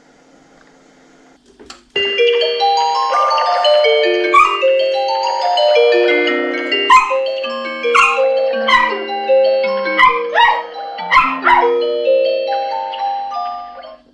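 Indoor doorbell chime unit playing a long electronic tune of stepped notes, set off by the doorbell button on the gate keypad. It starts about two seconds in. A dog barks several times over the tune.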